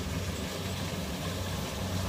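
Kubota combine harvesters' diesel engines running steadily under load while cutting ripe rice, a continuous low drone from the nearer machine with a second combine further off.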